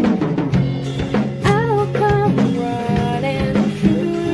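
A woman singing a ballad over strummed acoustic guitar, with a drum kit keeping a steady beat of kick, snare and cymbal hits.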